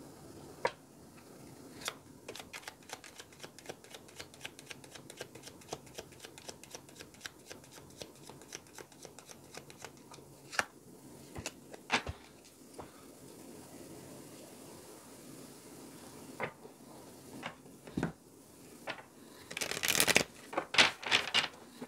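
A deck of Lenormand cards shuffled by hand: a quick, even run of soft card slaps, about five or six a second, for most of the first half. Then a handful of separate, louder taps and knocks as the deck is handled, with a cluster of them near the end.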